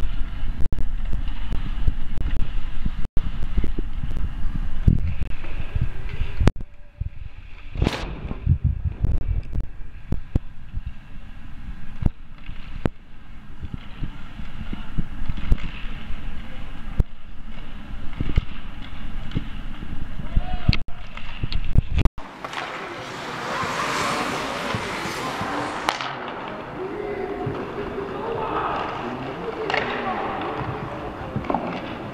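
Ice hockey game heard from rinkside: sharp clacks of sticks and puck, and knocks on the boards, over a low rumble. About two-thirds of the way in, the rumble drops away and a loud burst of shouting voices takes over, with calls continuing after it.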